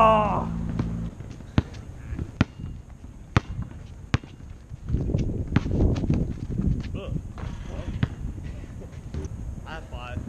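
Basketball bouncing on an asphalt court: single sharp bounces roughly a second apart, with a stretch of low noise midway. A voice calls out at the very start.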